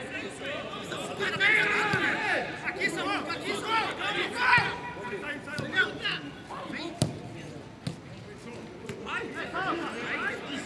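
Football players shouting and calling to each other during a training match, with a few sharp thuds of the ball being kicked, the loudest about seven seconds in.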